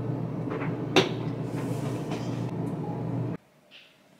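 Washing machine running with a steady low hum, and one sharp knock about a second in. The hum cuts off suddenly a little before the end.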